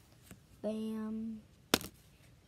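A child says a drawn-out "bam" in the middle, then a single sharp snap of a Pokémon trading card being flipped over comes near the end and is the loudest sound.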